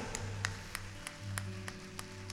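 A soft keyboard chord held steady, with a few scattered handclaps from the congregation.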